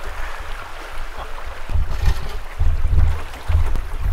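Creek water rushing over rocks, with repeated low rumbling thuds from the canoe as it is moved along the bank and noses into the brush, loudest in the second half.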